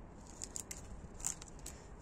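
Hand pruning shears snipping hydrangea leaves and stems: a few short, faint clicks spread over the two seconds.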